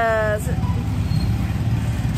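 A woman's voice ends a drawn-out, falling word just after the start, then a steady low rumble of outdoor background noise carries on under the pause.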